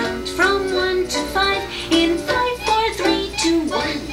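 Children's cartoon theme song: a high singing voice carrying a melody over light instrumental backing.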